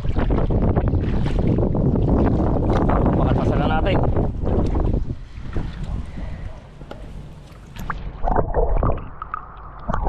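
Wind and water noise on the microphone beside a boat in shallow water. About eight seconds in, the microphone goes under the surface and the sound turns muffled and dull.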